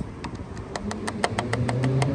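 Rapid, evenly spaced clicking, about seven clicks a second, typical of a bicycle freehub ratchet as the rear wheel turns. A low steady hum comes in about halfway through.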